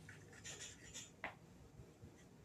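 Faint handling noise from fingers on the recording phone: light rubbing and scratching, then one sharp tap a little over a second in.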